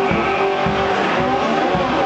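Homemade wine box guitar, a cigar-box-style instrument, played as slide blues, its notes gliding in pitch, over a steady low thumping beat about three times a second.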